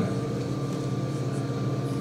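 Caterpillar M313D wheeled excavator's diesel engine running at a steady idle, a constant low hum with a faint whine above it.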